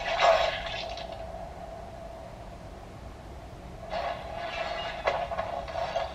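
A steady mid-pitched hum with hiss that swells briefly at the start and again about four seconds in, from the soundtrack of the anime being watched.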